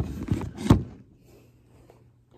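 Knocks and a brief clatter from a glass terrarium and its mesh screen top being handled, with a second sharp knock under a second in.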